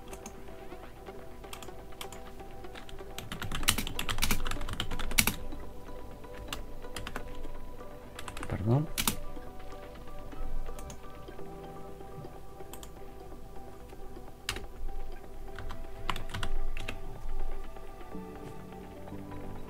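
Computer keyboard typing: a quick run of keystrokes about 3 to 5 seconds in, scattered single presses through the middle, and another run near the end, as a terminal command and password are entered. A brief rising tone sounds about halfway through.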